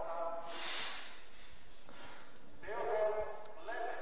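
Faint, distant speech: a voice is heard briefly at the start and again near the end, with a short hiss in between about half a second in.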